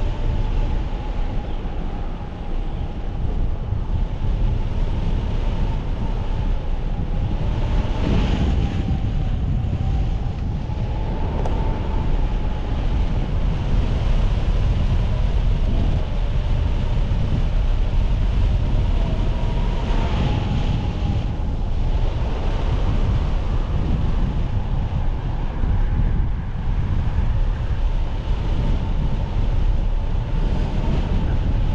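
Airflow rushing over the microphone of a hang glider in flight: steady, loud wind noise, with a faint high tone that wavers slightly in pitch throughout.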